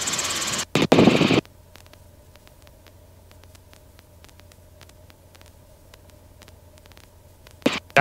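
Hiss of a Robinson R22 helicopter's headset intercom and radio feed as the channel stays open for about a second and a half after a radio call, then cuts to a faint steady hum with a thin tone and light ticking while the voice-activated intercom is closed. A short burst of the same hiss comes just before the end, as the intercom opens again.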